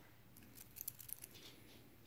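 Faint clinks of a stainless steel watch bracelet and case being handled: a short cluster of small metallic clicks from about half a second to just past a second in.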